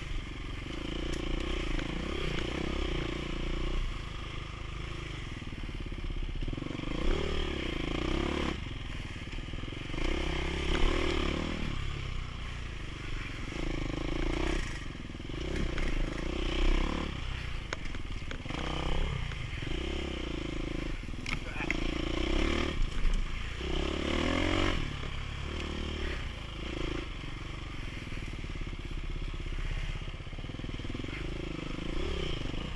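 Dirt bike engine on a tight wooded trail, the revs rising and falling every second or two as the throttle is opened and closed through the turns.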